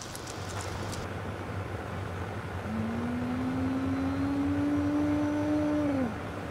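A car engine running over a low steady rumble. From about halfway in its note rises slowly, then it stops abruptly at the end.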